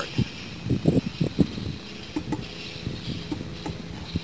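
Electric drive motor of a solar-powered boat running under throttle with a steady low hum. A quick run of clicks and knocks comes in the first second and a half, then only scattered ticks.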